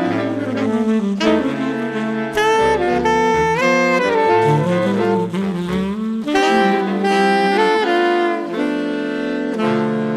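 Saxophone ensemble playing a jazz piece in harmony: several saxophones hold and move through sustained chords over a low bass line.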